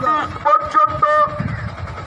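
A man talking, with a low rumbling noise in the second half.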